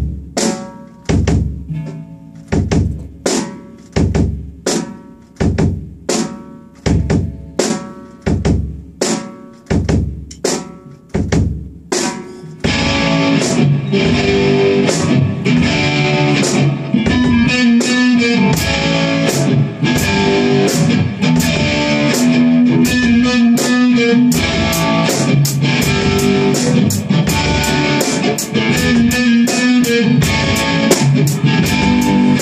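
Rock band playing live in a rehearsal room: electric guitar (a 1979 Ovation Viper II), bass and drum kit, instrumental. For about the first twelve seconds the band strikes accented chords together about one and a half times a second, each left to ring out, then the full band comes in playing continuously with cymbals.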